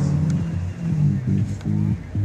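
Music with a low bass line that changes note every few tenths of a second.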